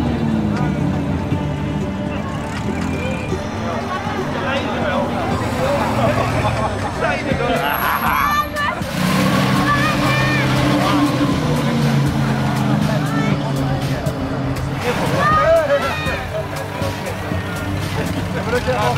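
Vintage car engines running at low speed while crowd voices carry over them. From about halfway, a 1927 Bentley 6½ Litre's large straight-six gives a deep, steady running note.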